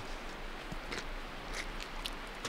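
Quiet outdoor background with a few faint, soft steps of a dog's paws on dry leaf litter.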